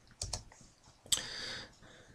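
A few light clicks from a computer keyboard and mouse. Two come close together about a quarter second in, and another about a second in is followed by a soft hiss lasting about half a second.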